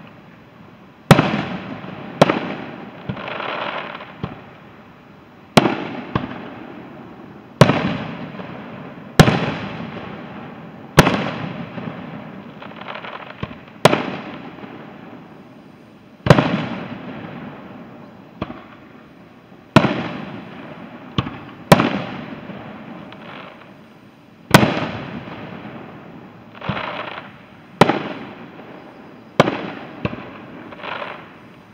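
Aerial fireworks shells bursting one after another, a sharp bang every one to two seconds, each trailing off in a long rolling echo. A few softer, drawn-out bursts fall between the bangs.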